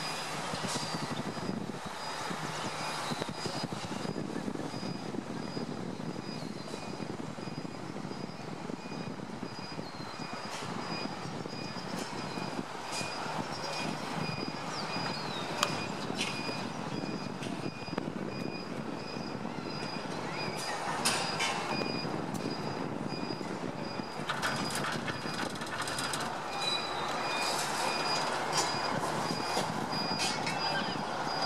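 Ride inside a San Diego Zoo Skyfari aerial tram gondola moving along its cable: a steady rush of cable-car running noise with a faint high squeal that comes and goes. A few clicks and knocks come in the last third as the car nears the station.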